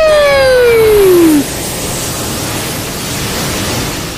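A cartoon bird's long cry, loud and falling steadily in pitch, breaks off about a second and a half in. A steady rushing noise follows.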